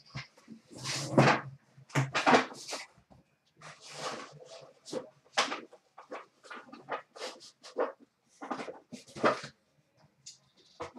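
Plastic shrink wrap on a hobby box being torn and crinkled by hand: a dozen or so short, irregular rustling rips.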